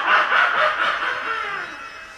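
An actor's drawn-out stage laugh, with a high voice that fades away near the end.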